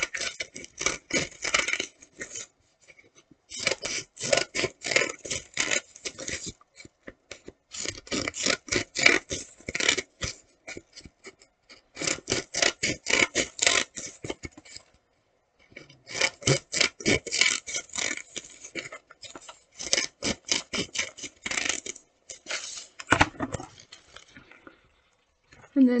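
Scissors snipping through folded paper in about eight runs of quick snips, each a few seconds long, with short pauses between as each strip is cut. A single knock comes near the end.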